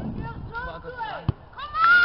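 Shouts of players on a football pitch: short calls, then a shrill, drawn-out call that rises and falls near the end. A single sharp thud comes about halfway through.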